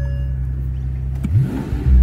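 Mercedes-Benz S65 AMG's twin-turbo 6-litre V12 idling steadily, then revved about a second and a half in, its pitch rising quickly. A short electronic chime sounds at the very start.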